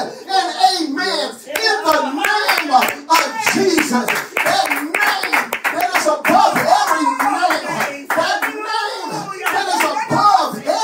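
Repeated hand clapping over a man's continuous, loud vocalizing into a close headset microphone.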